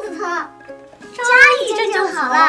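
Dialogue over light background music: one voice speaks briefly at the start, and a second line follows after about a second.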